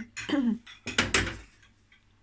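Metal cookware clanking on a gas stove, with a few sharp knocks about a second in.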